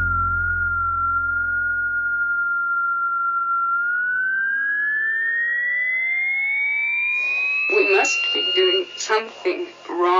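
Psychedelic trance breakdown: a held synth tone slides steadily upward in pitch through the second half, while a second sweep climbs from deep bass to meet it. The bass fades out early, and a voice sample comes in near the end, just before the beat drops back in.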